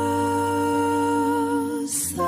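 Acoustic love-song cover: a singer holds one long, steady hummed note over the accompaniment, ending in a short breathy sound just before the next phrase.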